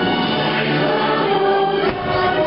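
Choir singing over music, the fireworks show's soundtrack. A single firework burst thumps through the music near the end.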